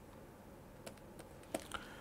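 Faint clicks of a stylus tapping and writing on a digital pen tablet, a few light ticks in the second half.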